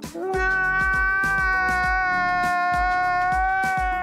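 A man's long, high-pitched wailing cry: one held note of about four seconds that tails off near the end. Background music with a steady low beat plays under it.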